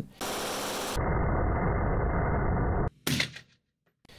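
9mm submachine gun fired at an indoor range: a dense stretch of noise for nearly three seconds, then one sharp report about three seconds in that rings off briefly.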